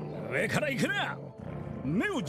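Snarling dog in an anime soundtrack, growling low and steadily, with a short run of swooping, rising-and-falling voice sounds over it about half a second in.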